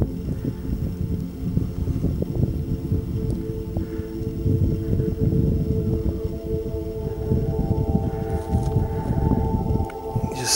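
Wind buffeting the microphone in a steady low rumble, under slow ambient music of long held tones; higher held notes join about seven seconds in.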